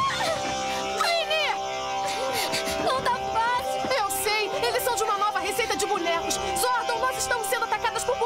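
Background music with long held notes, under short rising-and-falling vocal cries and a run of sharp hit sounds.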